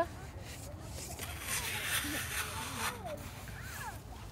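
Small plastic toy shovel scraping and scooping through damp beach sand: a gritty scrape lasting about two seconds in the middle.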